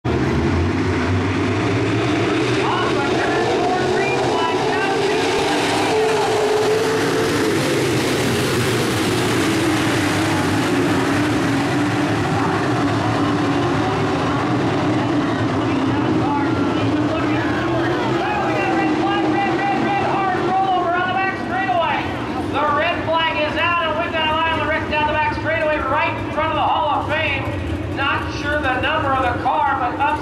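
A pack of dirt-track modified race cars running at speed, their engines loud and continuous. From about 18 seconds in the engine noise drops back and a person's voice, a PA announcer or nearby spectators, talks over the quieter track noise.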